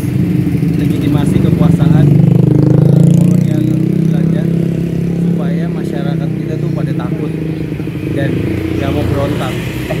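A vehicle engine running close by, loudest about two to three seconds in and then easing off, with scattered voices in the background.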